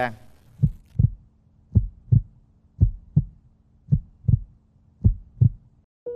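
Heartbeat sound effect: five double low thumps (lub-dub), about one beat a second, over a faint low drone that cuts off just before the end, a suspense cue while the contestants' button decision is awaited.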